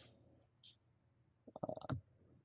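Near silence of a pause in a talk. Near the end comes a brief, rapid, creaky sound from a man's throat, about half a second long, as he draws breath to speak again.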